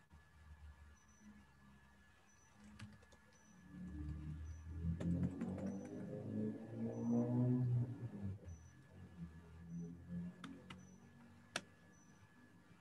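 A person humming quietly without words for a few seconds in the middle, with a few sharp clicks before and after.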